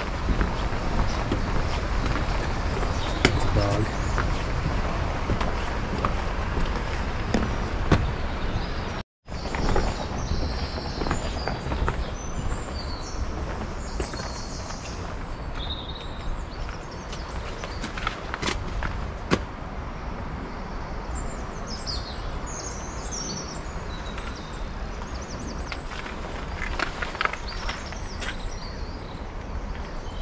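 Outdoor ambience: a steady rushing background with birds chirping now and then, and a brief cut to silence about nine seconds in.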